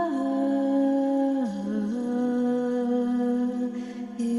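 A voice humming long, held notes in a slow, wordless toning. The note drops about a second and a half in, then settles on a slightly higher pitch for the rest.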